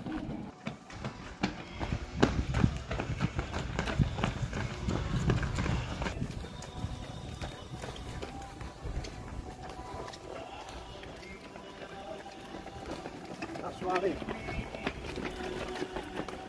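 Running footsteps of race runners on a stone-paved street, a patter of footfalls that is loudest in the first few seconds, with people's voices in the background.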